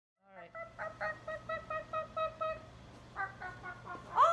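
Hen-like clucking: a quick run of short, even-pitched clucks, about four a second, with a few fainter ones near the end.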